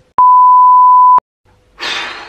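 Censor bleep: a single steady 1 kHz beep about a second long that cuts in and out sharply over speech. Near the end a burst of breathy noise starts and fades.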